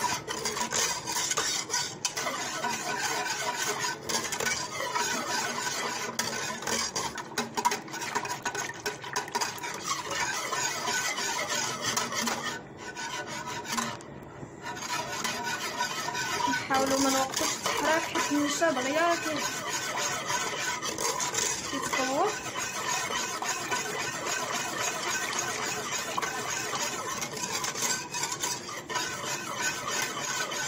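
Wire whisk beating a thin liquid in an aluminium saucepan: a continuous rapid scraping and clinking of the wires against the metal pot as the mixture cooks and thickens, with a short pause about halfway through.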